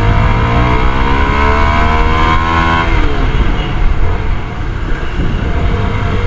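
CFMoto 250NK single-cylinder motorcycle engine accelerating, its pitch rising steadily for about three seconds and then falling away, with wind rumble on the microphone throughout.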